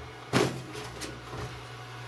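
Sheet-metal side panel of a desktop PC case being opened and lifted: a sharp metal clack about a third of a second in, then a lighter click near one second, over a steady low hum.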